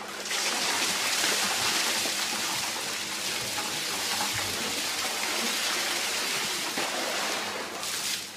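A large volume of water pouring in a steady stream from a tipped cement mixer drum, splashing over a seated man and onto the ground. The pour starts just after the beginning and tails off near the end.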